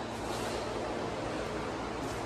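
Steady background hiss with a faint low hum: room tone, with no distinct event.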